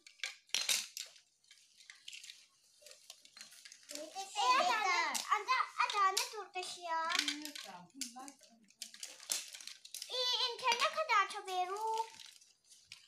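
Young children chattering in high voices while small plastic toys clatter and click against each other and the floor.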